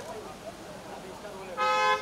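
A vehicle horn honks once near the end, a steady tone of about half a second and the loudest sound here, over the chatter of a crowd.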